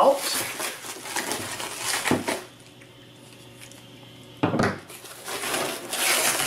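Clear plastic stretch wrap crinkling and rustling as it is cut and pulled off a cardboard parcel, with a short, loud crackle about four and a half seconds in after a quieter pause.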